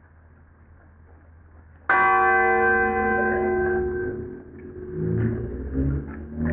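A church bell struck once in a funeral toll, ringing out and fading over about two seconds. Uneven low sounds follow near the end.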